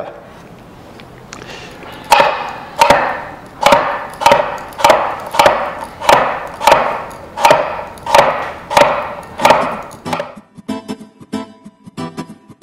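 Kitchen knife chopping mango on a wooden cutting board: about a dozen even strokes, roughly one and a half a second, made with a knife that barely cuts. Near the end the chopping stops and short plucked-guitar music comes in.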